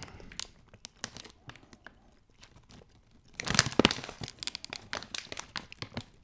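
Crinkly plastic bag of Doritos chips rustling as it is handled: a few scattered crackles, a louder burst of crinkling a little over three seconds in, then more scattered crackles.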